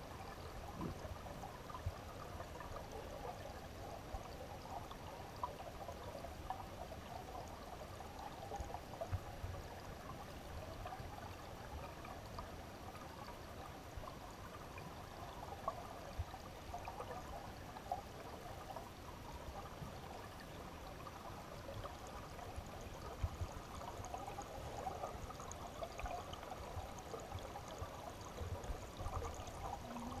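Stream current flowing over boulders, heard through a submerged camera: a steady, dull burbling rush with scattered low knocks.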